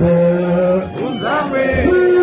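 A crowd of men singing a chant together, holding one long note for about the first second, then sliding through changing pitches as the line moves on.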